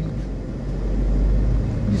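Low, steady rumble of a car's engine and road noise heard from inside the cabin while driving, growing slightly louder through the middle.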